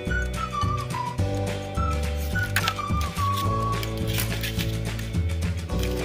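Background music: a high, whistle-like melody of stepping notes over a repeating bass line.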